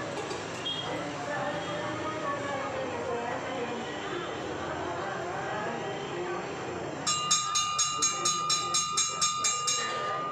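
Murmur of people's voices, then, about seven seconds in, a temple bell starts ringing quickly and evenly, about four strikes a second, each strike ringing on into the next.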